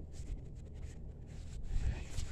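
Microfiber towel rubbing over waxed car paint by hand, buffing off dried paste wax, with a steady low rumble underneath.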